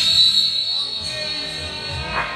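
Rock music with electric guitar, with a single high, steady whistle tone held for about two seconds.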